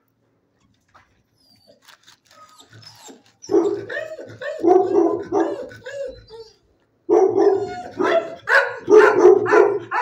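Dog barking in quick runs of repeated barks: quiet at first, starting about three and a half seconds in, pausing briefly around six seconds, then barking steadily through the end.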